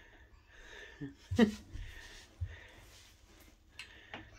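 Quiet breathing in soft puffs, with one brief vocal sound about a second and a half in and a couple of soft low bumps.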